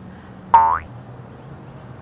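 Cartoon sound effect: a single short pitched tone that glides quickly upward, about half a second in.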